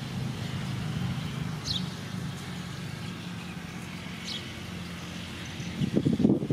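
A steady low engine hum, with two short high chirps falling in pitch, one a little under two seconds in and another a little after four seconds.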